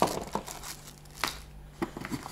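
Cardboard box and packaging rustling and crinkling as the shaver's charger is lifted out by hand, with a few sharp clicks and knocks, the loudest about a second and a quarter in.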